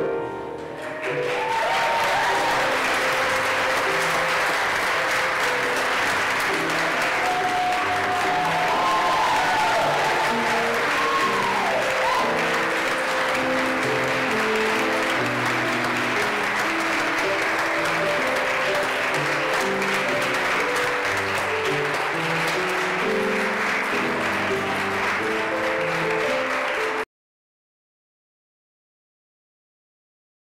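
A congregation applauding over steady piano music, with a few whoops in the first dozen seconds. The applause starts about a second in, and all sound cuts off abruptly about a second before the end.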